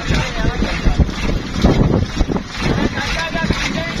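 Wind rumbling on the microphone over the raised voices of a crowd of men, with a man calling "chacha" near the end.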